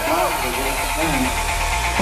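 A person talking over steady background noise, with a few held tones, and a low rumble coming up about halfway through.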